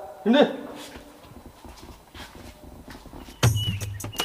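A short vocal cry, falling in pitch, near the start. Background music with a low beat and sharp percussive clicks starts about three and a half seconds in.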